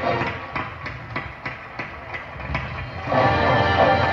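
Marching band: the percussion section keeps a steady beat of sharp clicks, about three a second. About three seconds in, the full band comes in loudly.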